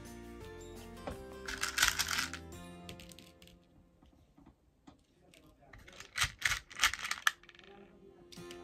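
Small beads rattling and clicking against each other as a hand rummages through them, in two bursts: about a second and a half in, and again around six seconds in. Background music plays underneath and fades out partway through.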